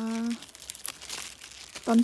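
Crinkling and rustling of broccoli leaves being grabbed and picked by hand, with small crackles, for about a second and a half after a woman's voice stops.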